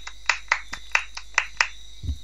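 A quick run of about eight sharp hand snaps or claps from one person, roughly five a second, stopping shortly before the end. A faint steady high whine runs underneath.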